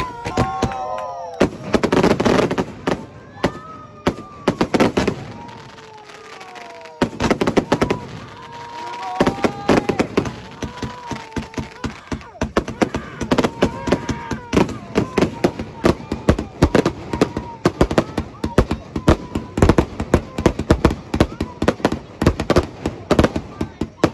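Fireworks going off in quick succession, bangs and crackles that come thicker and faster from about halfway. Toddlers cry close by in long wails that fall in pitch, frightened by the fireworks.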